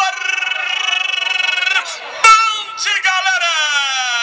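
A football announcer's drawn-out goal cry: one long held note with a wavering pitch, a sharp knock a little after two seconds, then a second long note that slowly falls in pitch.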